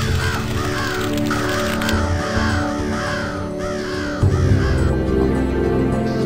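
Crows cawing over and over, about a dozen harsh calls in quick succession, stopping about five seconds in, laid over sustained, brooding background music that swells near the end.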